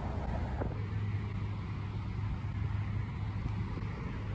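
Steady low rumble of inline skate wheels rolling on asphalt, mixed with wind buffeting the phone's microphone. About half a second in, the sound shifts to a steadier, deeper drone.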